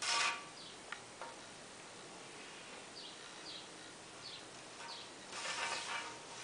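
Faint sounds of pattern drafting on kraft paper. There are a couple of light clicks from a plastic ruler, then a pen drawing a line along the ruler in a few short high strokes, and the paper rustles near the end as the ruler is shifted across the sheet.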